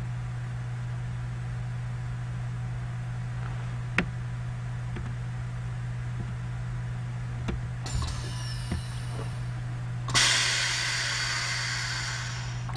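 Steady low hum with a few light clicks. About ten seconds in, a loud, steady hiss of compressed air starts as a Siemens SIPART PS2 smart valve positioner begins its initialization, moving its pneumatic actuator.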